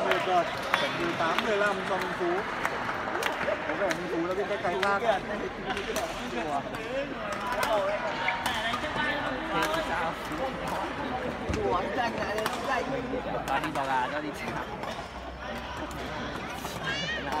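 Voices talking and chattering in a large sports hall, with scattered short sharp knocks. There is no steady machine or music, only ongoing voices and sporadic impacts.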